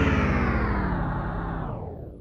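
Guitar-led rock music fading out, its pitch sinking and its sound growing duller as it dies away.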